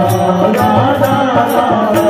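A Hindi devotional bhajan sung live by a male lead voice, with others singing along, over a steady drum beat.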